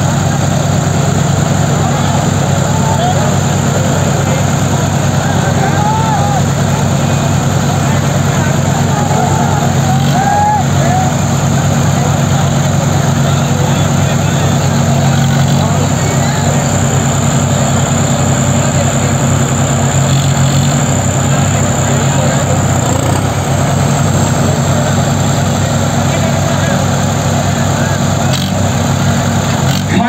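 Mahindra 575 and New Holland 3630 tractors' diesel engines running hard and steady under load as they pull against each other, the engine note shifting slightly about halfway through.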